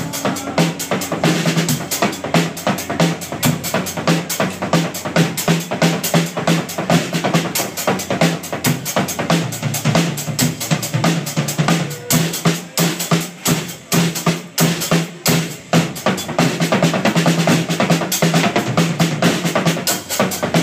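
Live rock band playing an instrumental passage: a drum kit driving a fast beat of kick, snare and cymbals over electric guitar and bass. The drums thin out to sparser, separated hits for a few seconds in the middle, then the full beat returns.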